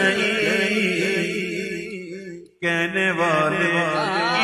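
A male voice singing a naat in a long, wavering, drawn-out line. It fades out about two seconds in, breaks off to silence for a moment, then the singing starts again abruptly.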